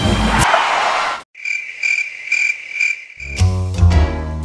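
The music breaks off with a brief noisy burst. Then crickets chirp alone, a steady high trill pulsing a few times a second, before music comes back in near the end.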